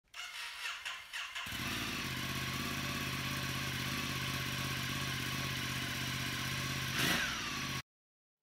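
Motorcycle engine starting, then settling into a steady idle. Near the end a brief throttle blip swells and falls away before the sound cuts off abruptly.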